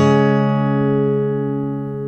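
Background music ending on a held guitar chord that rings on and slowly fades.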